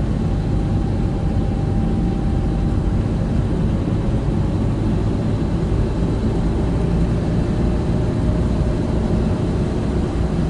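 Steady road noise heard from inside a car cabin at motorway speed on a wet road: an even low rumble of tyres and engine, with a few faint steady tones above it.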